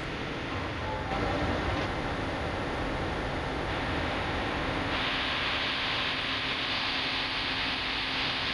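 Steady hiss and room noise from an open video-link audio feed with no one talking. The hiss gets brighter and a little louder about five seconds in.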